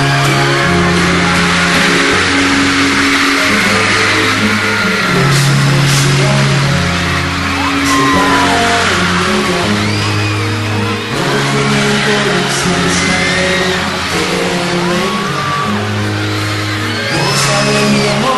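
Slow instrumental song intro of sustained keyboard and bass chords changing every second or two, over a large audience's high-pitched screams and whoops.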